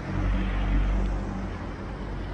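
Street traffic: a car engine running with a steady low hum and road rumble, easing off slightly.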